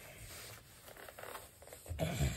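Faint zipping and rustling of a small dark fabric case being done up by hand.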